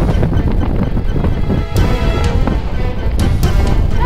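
Music with held tones over a steady beat.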